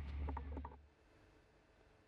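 Low rumble aboard a ship at sea, with a few faint short sounds over it, fading out under a second in. Near silence follows.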